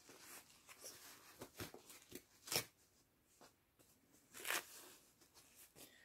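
Faint crinkling and rustling of a disposable diaper being handled and its tabs fastened, in short scattered bursts, with louder rustles about two and a half and four and a half seconds in.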